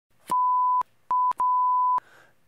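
A steady electronic beep tone at one pitch, sounded three times: long, short, long. Each beep starts and stops with a click.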